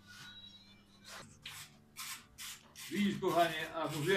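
A quick, even run of short hissing, scraping strokes, about two to three a second, starting about a second in, with a man's voice joining near the end.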